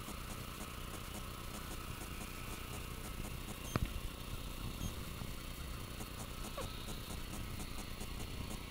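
A dog's front paws digging in loose garden soil, scraping and flinging dirt in a quick steady rhythm, with one sharp knock a little before the middle.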